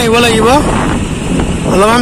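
A voice talking over a steady low rumble of wind on the microphone and a two-wheeler running at riding speed; the rumble carries on alone in the pause between words.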